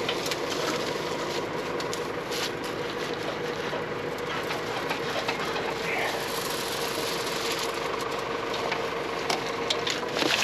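The engine of an adzuki bean harvesting machine runs at a steady idle with a constant hum. Dry bean stems crackle and click as they are pulled by hand out of its drum, which has jammed with stems and stopped turning.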